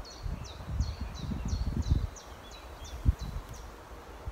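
A small songbird repeating a quick run of high, down-slurred notes, about three a second, over low rumbling noise. A single thump comes a little after three seconds in.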